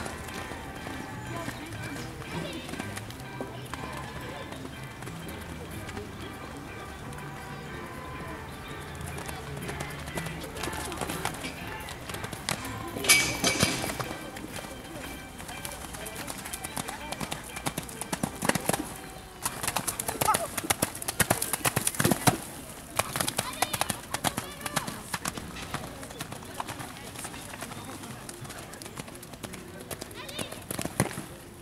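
Hooves of a cantering horse on a wet sand arena, a run of irregular thuds that grows busier in the second half, with one brief loud burst of noise near the middle. Music and voices are in the background.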